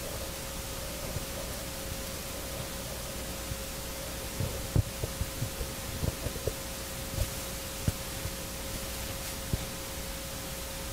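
Steady hiss and electrical hum of an open microphone channel, with a faint steady tone. Scattered short low thumps and bumps come in from about four seconds in.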